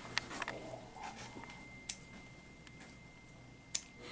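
Scissors snipping a budgerigar's flight feathers in a wing clip: about four quiet, sharp snips, spaced irregularly. A faint steady high tone runs underneath.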